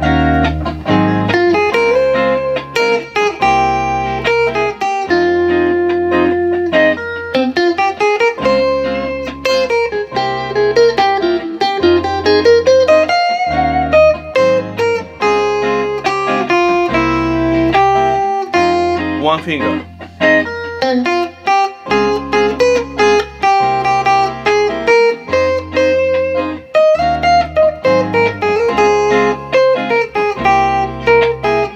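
Electric guitar playing a single-note melodic line, with slides and bends, over a looped backing track of bass and chords.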